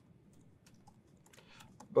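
Typing on a laptop keyboard: a run of faint, irregular key clicks.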